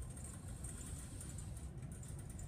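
Faint scratch of a pencil drawing a line on paper, over a low, steady room hum.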